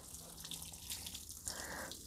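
Water showering faintly from the rose of a plastic watering can onto soil and young plants.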